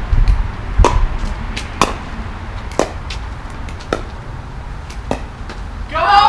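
Pickleball rally: sharp pops of composite paddles striking the plastic ball, about one a second, with fainter ticks between and a low rumble underneath.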